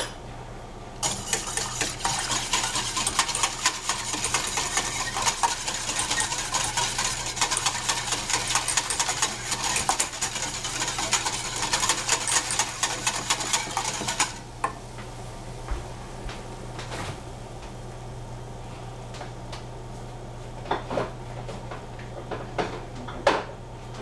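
A utensil stirring rapidly in a metal pot of milk and chocolate, a fast continuous scraping that runs for about thirteen seconds and then stops abruptly. A few light clinks follow, over a steady low hum.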